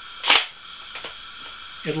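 A sharp metallic click from the bolt action of a King Carol carbine, a controlled-feed Mauser, as the bolt is worked over a headspace gauge fed from the magazine, then a faint second click about a second later. The action locks up, because the gauge has not been slipped under the extractor first.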